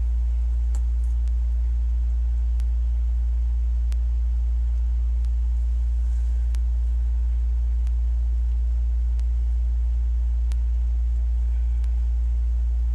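A loud, steady low hum with no change, and a few faint clicks scattered through it.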